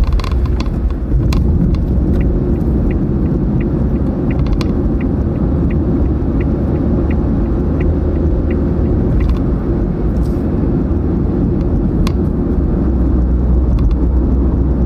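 Steady low rumble of a car driving at speed, with tyre, road and engine noise heard from inside the cabin. A light, regular ticking runs for several seconds in the middle.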